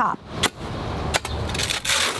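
A few sharp strikes of a tool chopping food scraps on a compost pile of wood chips, about two-thirds of a second apart, then a longer scrape near the end as a shovel digs into the pile. A low steady rumble sits underneath.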